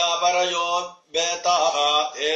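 A man reciting a Sanskrit verse in a chanting tone, in two phrases with a short break about a second in.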